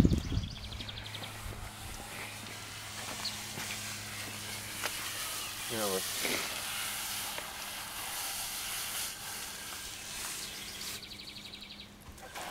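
Garden hose spray nozzle running steadily, its water hissing and splashing as a muddy wash rag is rinsed out over grass. A low thump right at the start.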